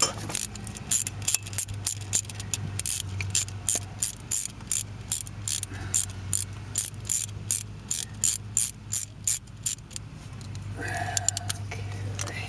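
Socket ratchet clicking steadily, about three clicks a second, as it turns out the 10 mm bolt that holds a crankshaft position sensor in the engine block. The clicking stops near the end.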